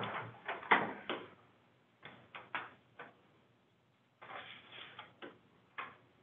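A few scattered light clicks and knocks, with a short rustling noise about four seconds in, over narrow-band meeting audio.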